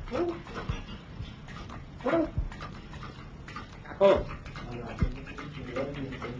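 African grey parrot giving short word-like calls in mimicked speech, three of them about two seconds apart, with a few low knocks in between.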